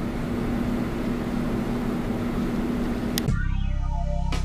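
Steady background hum and hiss with one low, even tone. About three seconds in, it cuts off with a click and background music begins.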